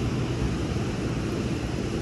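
Steady wind rumbling on the microphone, mixed with the rush of breaking surf.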